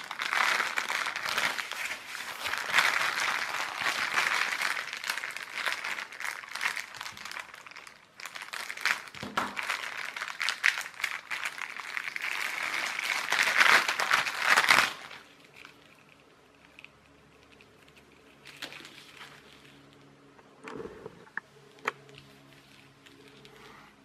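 Clear plastic bag of crocodile-clip test leads being handled and opened, crinkling and rustling for about fifteen seconds. Then it turns much quieter, with a few sharp clicks.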